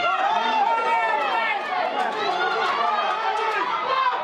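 Football crowd of many voices shouting and calling out at once, rising in excitement as an attacker runs through on goal.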